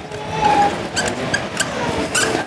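Dry-erase marker squeaking and scratching on a whiteboard as a word is written: one short squeal, then a few quick sharp squeaks as the pen strokes.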